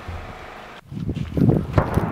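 Outdoor ambience with wind on the microphone. It cuts off abruptly a little under a second in, then comes back louder and lower-pitched.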